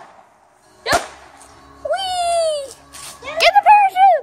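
A single sharp bang from a small parachute firework about a second in, followed by children's high, falling shouts and squeals twice.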